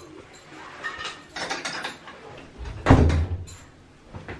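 Rustling and small knocks of someone walking through a hallway, with a loud, sudden low thump about three seconds in.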